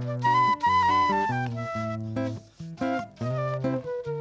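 Concert flute playing a melody over acoustic guitar accompaniment, the instrumental introduction of a song, with a brief break in the flute line about two and a half seconds in.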